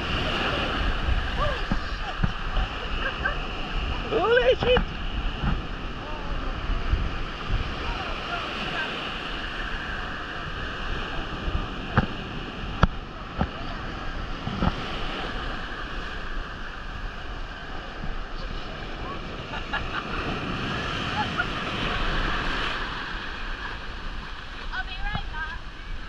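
Sea surf breaking and washing up the beach around the legs of people wading, with wind on the microphone. A brief voice or laugh cuts through about four seconds in, and more voice sounds come near the end.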